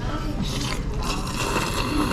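A person slurping noodles from a small bowl held to the lips. There is a short slurp about half a second in, then a longer, louder one from about a second in.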